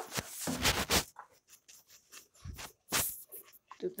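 Wire whisk stirring pancake batter in a bowl: irregular swishing and scraping strokes, with the wires tapping the bowl, busiest in the first second and sparser after.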